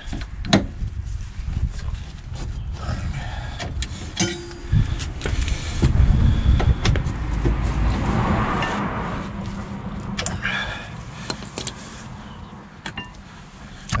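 Hand ratchet and socket tightening the bolts of a car's rear brake caliper: scattered clicks and metal knocks, with a low rumble swelling in the middle.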